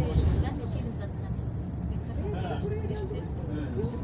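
Steady low rumble of a car driving through a road tunnel, heard from inside the car, with a voice talking over it in the second half.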